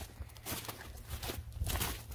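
Footsteps walking through patchy snow and dry forest litter, a run of irregular steps.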